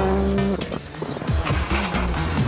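Škoda Fabia R5 rally car's turbocharged four-cylinder engine revving hard with tyres squealing as the car slides through a tight turn. The sound dips briefly a little past half a second in, then picks up again, over background music.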